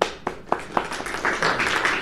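Audience applauding: a few separate claps at first, filling in to dense applause about a second in.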